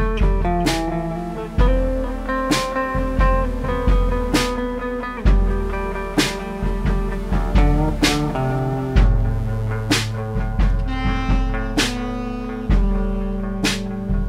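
Jazz band playing live: electric bass notes and held keyboard chords, with sharp drum and cymbal hits about every second or two. Tenor saxophone may enter near the end.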